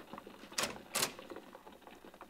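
Radio-drama sound effect of footsteps walking: faint short ticks, with two sharper clicks about half a second and a second in.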